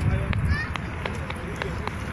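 Outdoor seaside ambience: a low, uneven rumble of wind on the phone microphone, with people's voices in the background and a few faint clicks.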